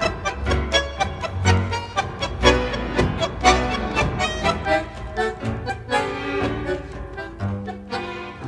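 Instrumental tango played by a tango orchestra: violins over a deep bass line, with sharp, strongly accented beats running through the passage.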